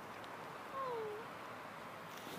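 Small dog giving one short whine that falls in pitch, about half a second long, a little before the middle, while it is being petted.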